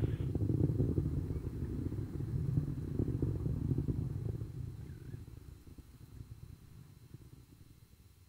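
Low rumble of the Atlas V rocket's first-stage RD-180 engine in powered flight, heard on the onboard camera feed. It fades steadily over the second half.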